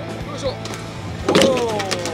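A boat's engine hums steadily under background music. A loud exclamation falls in pitch a little over a second in.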